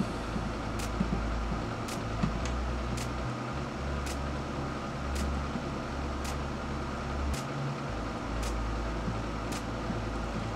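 Steady low room hum and hiss, with faint sharp ticks about once a second.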